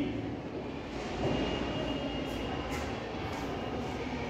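Steady low room hum, with a few faint light taps of a stylus on a smartboard screen as a line of writing is finished.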